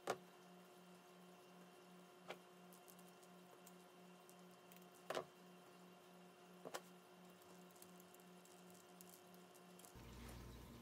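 Near silence with a faint pulsing hum and about four faint, short clicks as thin wire ornament hooks are fastened through the spokes of a metal wire wreath frame.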